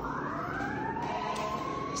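Emergency-vehicle siren wailing, its pitch rising slowly and steadily.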